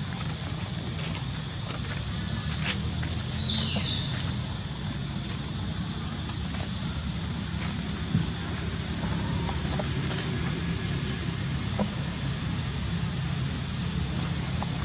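Steady outdoor background of a low rumble and a thin, steady high tone, with one short high-pitched call that falls in pitch about three and a half seconds in, and a few faint clicks.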